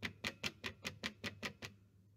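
A quick run of light clinks, about five a second, ending shortly before the end: a glass stirring rod and metal tongs knocking against each other and against a small glass beaker while scraping silver crystals off a coiled copper wire.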